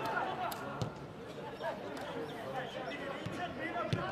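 Football players shouting calls to one another across the pitch, with a few sharp knocks of the ball being kicked, about a second in and again near the end.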